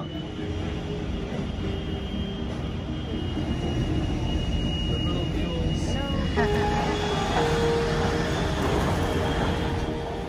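A low, steady rumble throughout, growing slightly louder. About six seconds in, background music with long held notes comes in over it.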